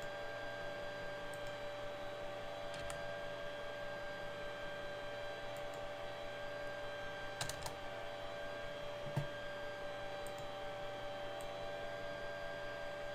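A few scattered computer keyboard and mouse clicks over a steady electrical hum. There is a quick cluster of clicks about seven and a half seconds in, and a single louder knock just after nine seconds.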